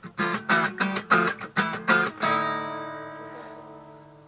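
Guitar strummed in quick strokes, about six a second, for roughly two seconds, then a final chord left to ring out and slowly fade.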